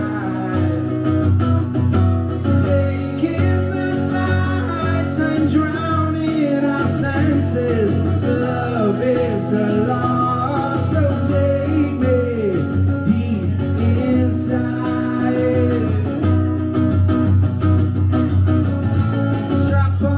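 Acoustic guitar strummed steadily with a man's singing voice over it, the voice gliding through a melody with few clear words.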